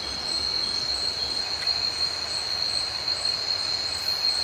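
Night-time jungle insects calling: a steady, unbroken high-pitched whine with fainter higher tones over a soft hiss.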